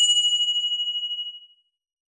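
A single bright, bell-like ding ringing out and fading away over about a second and a half.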